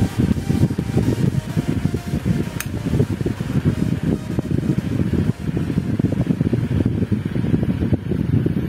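Electric fan running on its second speed setting, a steady rumble of moving air with a fluttering low end.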